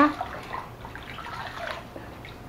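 Quiet sloshing and dripping of water as a cloth is swished in a plastic basin and lifted out.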